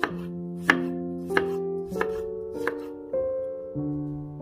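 Chef's knife chopping garlic cloves on a wooden cutting board: a series of sharp knocks, roughly one every two-thirds of a second, over background music.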